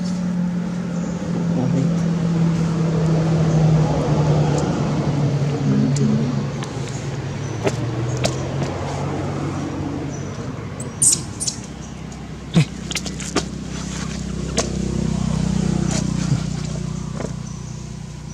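A motor engine running steadily, its low hum slowly falling and then rising in pitch, as from a vehicle idling or moving slowly. A few short sharp clicks come in the second half.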